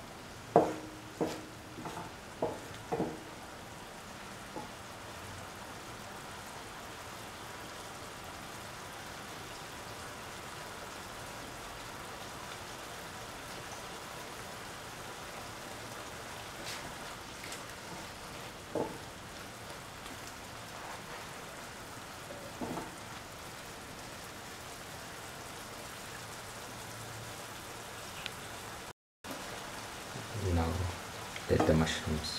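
Mushrooms with capsicum and tomato cooking in a pan in their own released liquid: a steady sizzling hiss. A few sharp knocks of the stirring spoon against the pan come in the first three seconds, and two more come later.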